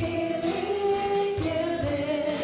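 Live church worship band playing a gospel song, with several women's voices singing together in long held notes over the band.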